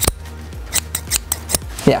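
Small metal thread shears snipping open and shut in the air close to the microphone, giving a run of sharp metallic clicks.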